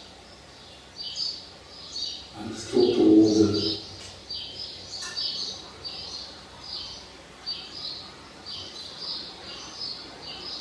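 A small bird chirping over and over, about two short high chirps a second. A louder, lower sound breaks in briefly about three seconds in.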